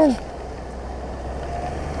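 Royal Enfield Bullet single-cylinder motorcycle engine running with a steady low rumble and road noise on a dirt track, growing a little louder towards the end.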